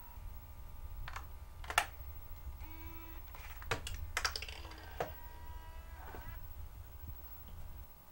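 Several sharp clicks or taps at irregular intervals, over a low steady hum.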